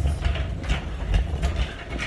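Handling noise from a handheld phone carried while walking: an uneven low rumble with scattered irregular knocks and rustles, easing shortly before the end.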